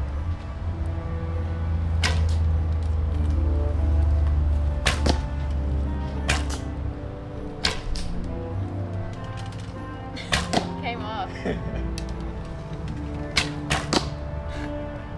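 Samick takedown recurve bows being shot: about eight sharp snaps of bowstrings releasing and arrows striking the target, some in quick pairs.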